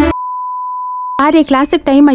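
A single steady, high, pure beep tone lasting about a second, cutting in as the music drops out, of the kind edited in to bleep out a word. Speech follows right after it.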